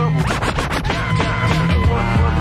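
A DJ scratching a vinyl record on a turntable over a hip-hop beat, a quick run of back-and-forth strokes in the first second, with the beat running on after.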